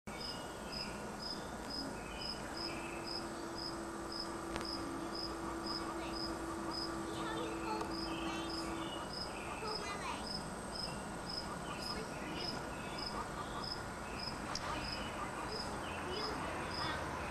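A cricket chirping steadily, about two short high chirps a second. A low steady hum runs alongside it for several seconds in the first half.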